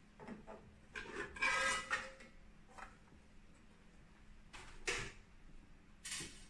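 The printhead carriage cover of a UV flatbed printer being lifted off and handled: a few light knocks, then a louder scraping clatter about one to two seconds in, and another knock near the end.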